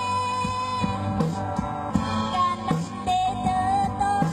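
A woman singing a pop song into a microphone over backing music with a steady drum beat, holding long notes.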